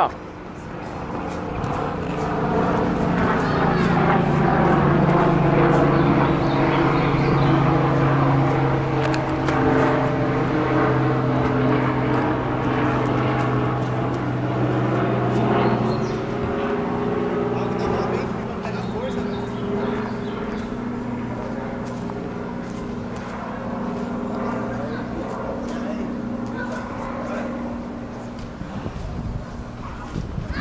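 A steady droning hum made of several tones together. It drifts slowly in pitch, sagging and rising over several seconds, and is louder in the first half.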